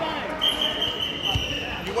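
Wrestling match timer sounding a long, steady high-pitched tone about half a second in, signalling the end of the period. A dull thump comes about a second later.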